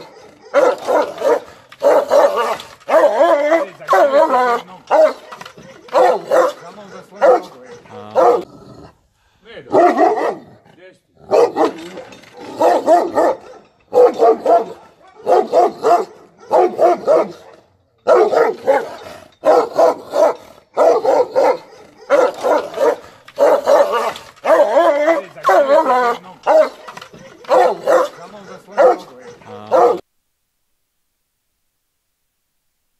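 Dogs barking over and over, a long run of loud barks at about two a second, broken by short pauses about eight and seventeen seconds in.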